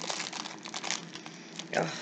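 Clear plastic wrapping around a wax melt crinkling and rustling as it is handled, a dense run of fine crackles.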